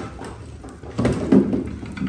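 Firewood knocking and scraping as it is loaded into the firebox of a wood-fired maple sap evaporator, with a short cluster of knocks about a second in.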